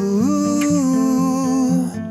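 Song with a wordless sung note that slides up just after the start and is held for over a second, over acoustic guitar accompaniment.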